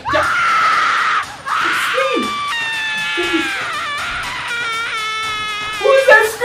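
A person screaming: a high cry, a short yell, then one long held scream from about two and a half seconds in that sags a little in pitch, over background music.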